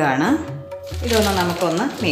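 A voice over background music.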